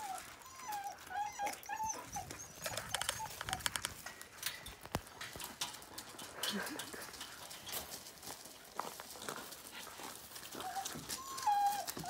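Husky whining in high, wavering cries that bend up and down in pitch: a run of them in the first two seconds and another near the end, with scattered scuffs and clicks between.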